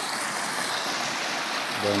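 Shallow rocky river running over boulders and small cascades: a steady rush of water.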